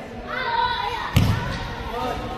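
A single sharp thump a little over a second in, following a short call from a voice.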